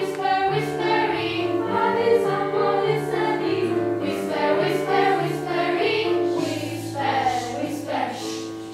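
Children's choir singing with piano accompaniment, the voices holding sustained notes over a moving low piano line.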